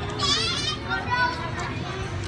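Background voices: a child's high-pitched voice rising and falling briefly near the start, then people talking.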